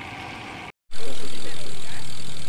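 Steady wind and road noise on a bicycle-mounted microphone while riding, broken by a short gap of silence at an edit cut about three quarters of a second in; after the cut the noise is much louder and slowly eases off.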